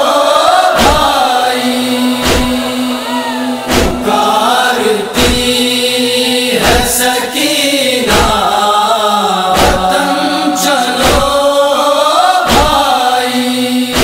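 Noha interlude without lyrics: voices chant a wordless, wavering melody over a held drone. Matam chest-beating thumps keep an even beat about every one and a half seconds.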